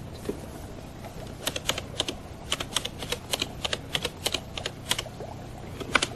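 Keystrokes on a computer keyboard: a run of irregular sharp clacks, several a second, starting about a second and a half in and stopping about a second before the end.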